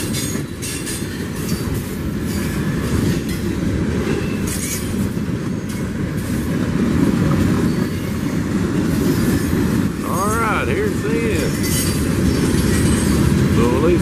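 A CSX freight train's boxcars and covered hoppers rolling past, a steady loud rumble of steel wheels on rail with scattered sharper clicks and squeaks from the wheels.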